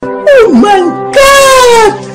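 A man's loud, high-pitched wailing vocal over a music bed: a short note that dips sharply and swoops back up, then a long held note that slowly sags in pitch.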